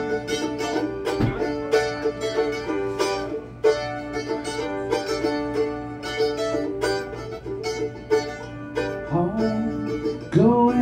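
Mandolin played solo, a quick picked melody with a rapid run of separate plucked notes forming an instrumental break in an acoustic song. Near the end a singing voice begins to come in over it.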